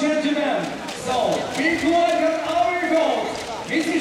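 Speech: a voice calling out with long, drawn-out syllables.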